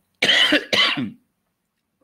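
A man coughing twice: two loud, harsh bursts close together in the first second.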